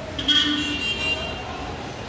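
A short vehicle horn toot about a quarter-second in, fading within a second, over steady traffic and mall background noise.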